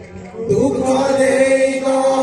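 Kirtan singing: after a brief lull in the music, a voice slides upward about half a second in and holds one long, steady note.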